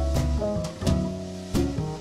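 Instrumental jazz recording: chords over a low bass line, with drum-kit and cymbal hits every half second or so.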